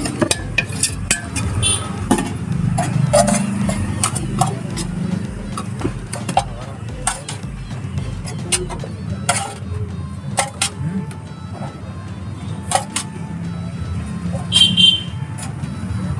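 A metal spoon clinks and scrapes irregularly against a steel mixing bowl as chopped vegetables and chickpeas are stirred and ladled, over a steady low hum. Near the end there is a brief, brighter ringing clink, the loudest moment.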